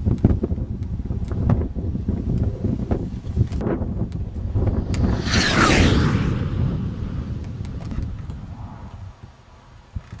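Wind buffeting the microphone, a gusty low rumble throughout, with a loud rushing noise swelling and fading about halfway through.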